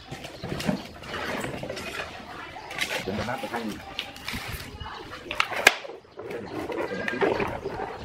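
Stiff plastic water jugs being handled on a wooden table: a scatter of knocks, taps and crackles of plastic against cement and wood.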